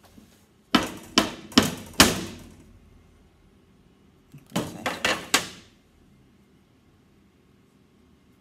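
Hard plastic mould knocked edge-down against a stainless steel worktop to loosen moulded sugar paste from it. There are two sets of about four sharp raps, the first near the start and the second about two seconds later.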